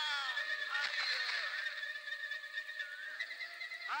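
A man's drawn-out cry falling in pitch and trailing off, then a steady high-pitched ringing tone held for about three seconds, and a quick rising whoop near the end.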